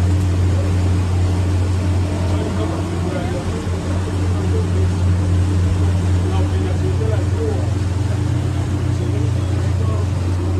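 A small boat's engine running steadily with a loud low hum, its pitch shifting slightly about seven seconds in, over the wash of water and wind.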